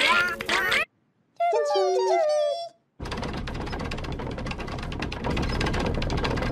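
Squeaky chirping voices of the bird-like animated Twirlywoos characters, then a short burst of gliding, squeaky pitched calls. From about three seconds in, a steady crackling hiss takes over.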